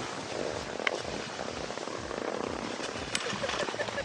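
Skis sliding over packed snow: a steady scraping hiss, with two faint clicks, about a second in and about three seconds in.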